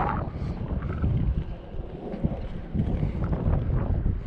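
Gusty wind buffeting the microphone: an uneven low rumble that eases briefly around the middle and picks up again toward the end.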